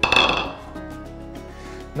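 A single sharp clink of kitchenware, ringing briefly at a high pitch, right at the start, over steady background music.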